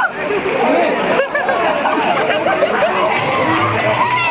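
Several people talking over one another: lively group chatter with no single clear voice.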